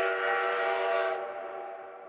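A train whistle sound effect: one long blast of several tones sounding together, held steady and then fading away from about a second in.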